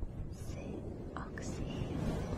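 A woman whispering softly and close to the microphone, her sibilant consonants hissing briefly a few times, over a steady low rumble.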